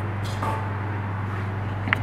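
A steady low hum, with a light clink of a spoon against a stainless steel mixing bowl near the end as muffin batter is spooned out.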